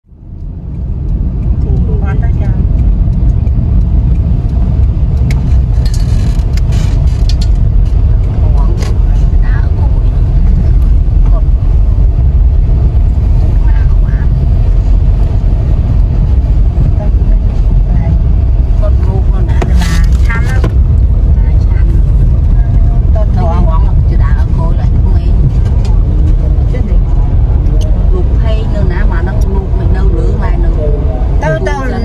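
Steady low rumble of a vehicle driving, heard from inside the cabin: engine and road noise.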